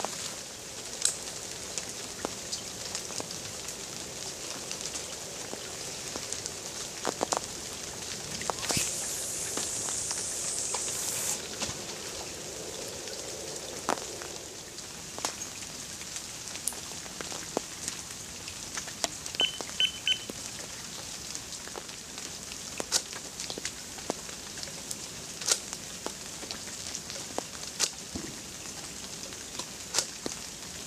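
Scattered small clicks and knocks of carp-fishing tackle being handled at the water's edge, with three quick beeps from an electronic bite alarm about two-thirds of the way through as a rod is set on the rod pod.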